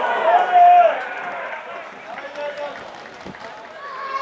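Men's voices shouting at a football match, with one loud drawn-out shout about half a second in, then quieter scattered calls.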